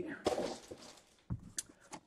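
Hockey card packs and their foil wrappers rustling as they are handled, fading out within the first second, followed by a couple of light taps.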